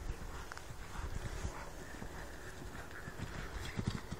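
Faint hoofbeats of a horse cantering on a soft arena surface, over a low rumble.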